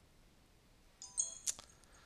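A quiet pause, then about a second in a couple of short computer mouse or keyboard clicks with a brief faint ringing tone.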